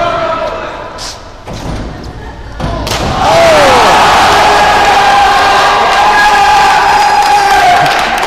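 A sharp thud about three seconds in, then a crowd yelling and cheering loudly, with sustained shouts, until near the end.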